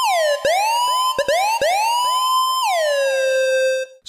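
Synthesized dub siren from the Phasemaker synth app: repeated notes whose pitch swoops up an octave and drops back, each trailed by fading delay echoes and reverb. Near the end a note falls to the lower pitch and holds, then cuts off.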